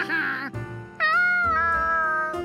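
An animated monkey's voice giving a short, bouncy laugh, then, about a second in, one long high note that dips slightly and then holds steady, over light background music.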